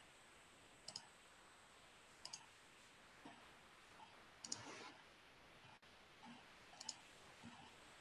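Faint computer mouse clicks over near silence: four short double clicks spread a second or two apart.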